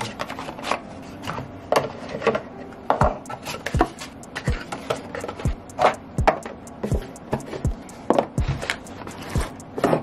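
Cardboard product boxes being handled and set down on a wooden tabletop: an irregular run of taps, knocks and light scrapes.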